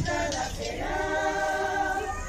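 Choir singing, without instruments, holding a long chord through the second half.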